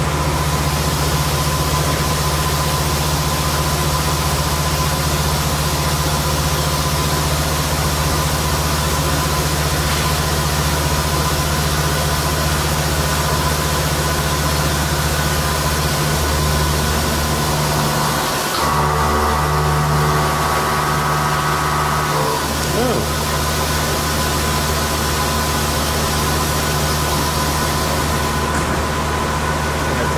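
FANUC Robodrill CNC machining centre running: a loud, steady mechanical hum under an even hiss, with the low hum shifting about halfway through. A brief cluster of whining tones sounds a little past the middle.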